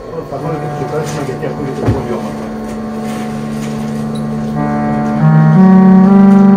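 Electronically reproduced sound of an instrument made for Byzantine church music, playing sustained organ-like tones: a steady low drone under melody notes that change in steps. It grows louder about two-thirds of the way in.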